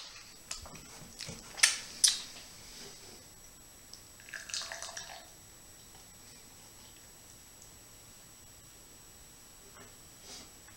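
Beer poured from an aluminium can into a pint glass: a couple of sharp clicks early on, a short splashing burst about four seconds in as the pour starts, then a faint steady pour as the glass fills and foams.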